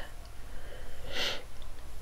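A single short sniff, about a second in, over quiet room tone.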